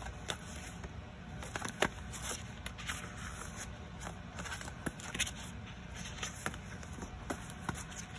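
Sheets of thick cardstock being shuffled and flipped by hand: irregular light rustles and snaps, over a steady low background hum.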